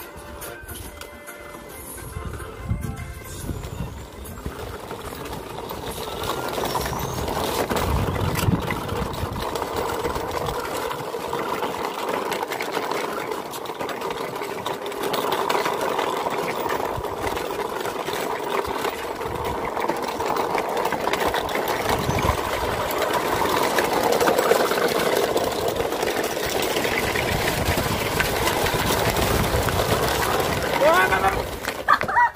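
A radio-controlled model semi truck's small electric motor and gears whirring as it drives, under background music.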